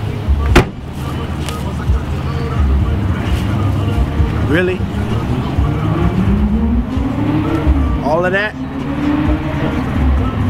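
A car trunk lid slams shut about half a second in. After that, a steady low car engine hum runs under traffic, with a vehicle passing in the second half, its pitch rising and then falling. Two brief rising squeals come near the middle and near the end.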